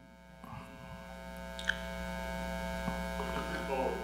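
Steady electrical mains hum from the sound system, with faint scattered voices of audience members in the hall.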